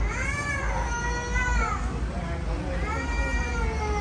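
A young child crying in two long, wailing cries, each rising and then falling in pitch; the second begins a little before the end.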